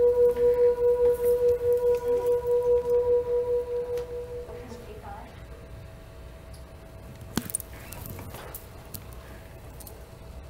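The Music of the Plants device, driven by electrodes on a potted plant's root and leaf, sounding one long electronic note that pulses a few times a second and fades away over about four seconds. A single sharp click comes about seven seconds in.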